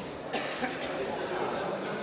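Indistinct talking echoing in a large sports hall, with a sharp click at the very start and a cough about a third of a second in.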